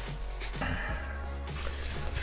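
Background music with a steady low bass line, and a soft brushing sound about half a second to a second in as the keyboard case is handled and turned over.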